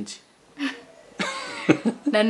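A person coughing: a short, rough cough about a second in.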